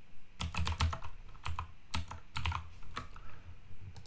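Typing on a computer keyboard: irregular runs of keystrokes with short pauses between them.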